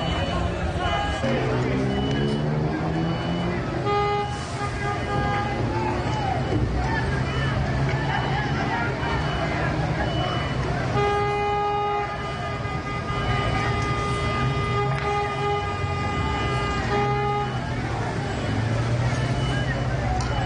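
Car horns honking over people shouting: a blast of about a second and a half about four seconds in, and a long one held for about six seconds from around eleven seconds in.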